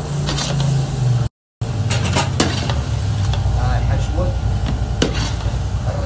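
Shrimp sizzling in a large aluminium pan of fried onions and spices while a metal spatula stirs them, scraping and clanking against the pan now and then over a steady low hum. The sound cuts out completely for a moment a little after one second.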